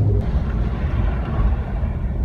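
Steady road and engine noise inside a moving Jeep's cabin, mostly a low rumble.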